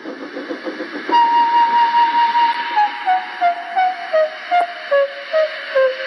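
Background music: a held high note from about a second in, then a melody stepping down note by note over a steady pulsing beat.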